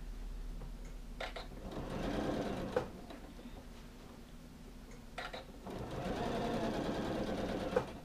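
Janome sewing machine stitching a jacket sleeve seam in two short runs, each about one to two seconds long and ending in a sharp click as the machine stops. There are a few softer clicks just before each run starts.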